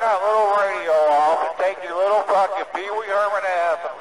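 Speech only: a man talking angrily over CB radio.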